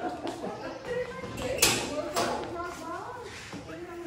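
Indistinct voices talking, with two sharp knocks close together about halfway through.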